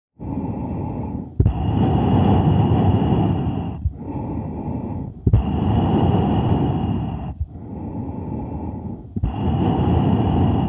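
Loud, slow breathing, about three breaths, each cycle a quieter phase followed by a louder one that starts with a sharp click.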